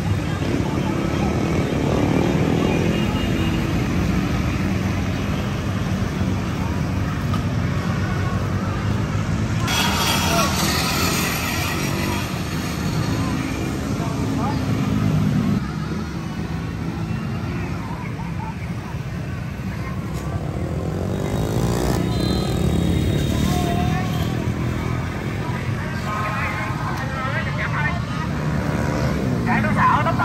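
Busy street traffic, mostly motor scooters with some cars running past in a steady stream, with people's voices close by.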